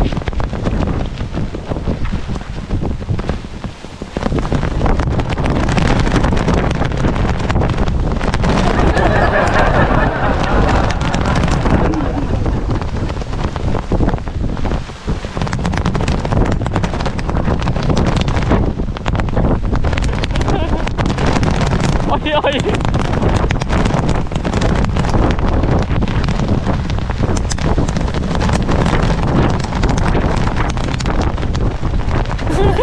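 Strong gusting storm wind buffeting the microphone, loud and continuous, with short lulls about four seconds in and again around fifteen seconds.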